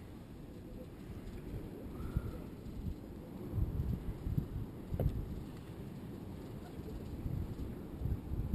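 Wind buffeting the microphone high on an open platform: an uneven low rumble that comes and goes in gusts, with a faint short high note about two seconds in and a single click about five seconds in.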